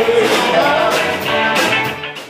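A rock band playing live: electric guitars and a drum kit with a singer, loud and dense with a steady beat.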